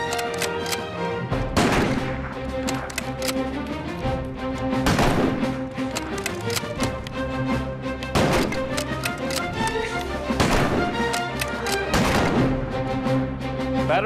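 About five rifle shots fired at a target, one every two to three seconds, each trailing off in a short echo, over background music with held notes.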